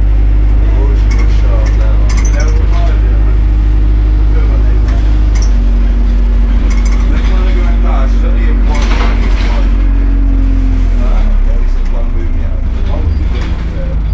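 Interior of a London single-deck diesel bus on the move: a steady low engine and drivetrain hum with tones that step down in pitch twice, as the bus changes gear or eases off. It gets a little quieter near the end.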